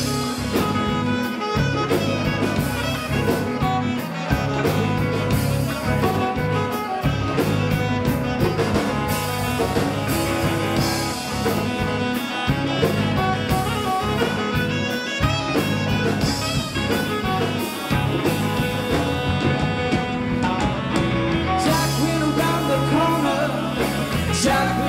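Live band playing an instrumental passage with a steady beat: electric guitar lead over bass, drums and congas, with saxophone.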